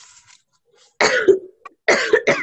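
A girl coughing: a harsh cough about a second in and another starting near the end. The coughing is acted, for a character running out of air.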